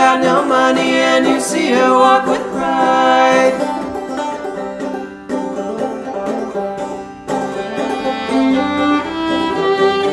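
Instrumental break of a folk song played by a small string band: picked strings with a bowed fiddle, the fiddle's longer held notes coming forward near the end.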